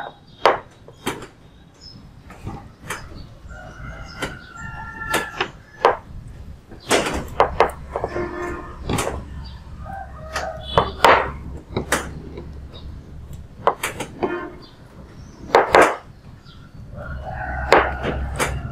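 Hands folding a gauze-wrapped herbal leaf poultice and pressing it on a metal tray: scattered light clicks and knocks of the tray and hands against the table, with cloth handling.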